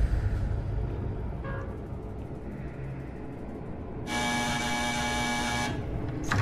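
A low dark drone, then about four seconds in an electric door buzzer sounds once, a harsh steady buzz lasting about a second and a half.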